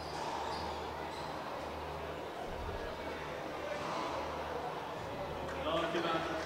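Racquetball rally in play: a rubber ball knocking off the court walls and racquets, with shoes on the hardwood floor, under a steady low hum and voices. A short voice is heard near the end.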